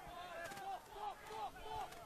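Faint, indistinct voices over low background ambience, well below the level of the commentary.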